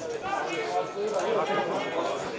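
People's voices talking, with no other distinct sound standing out.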